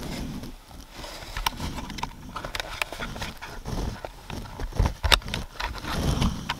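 Hands handling a removed stock steering wheel and working a small white plastic connector clip free from its back: irregular plastic clicks and knocks over a low handling rumble, with a sharper knock about five seconds in.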